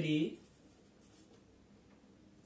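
A man's voice finishing a phrase in the first moment, then faint scratching of a marker pen writing on a whiteboard.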